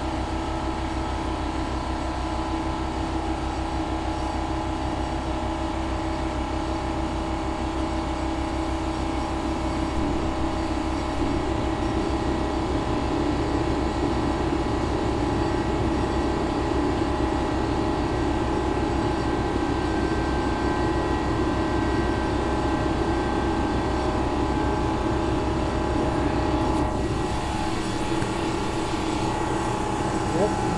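An airbrush air compressor and a heater running together as a steady machine drone with several steady tones. It grows a little louder about ten seconds in, and the deepest part of the hum drops away near the end.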